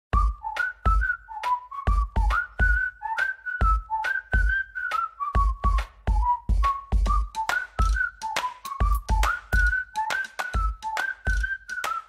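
Upbeat intro jingle: a whistled tune hopping between a few notes, over a steady drum beat with sharp clap-like hits.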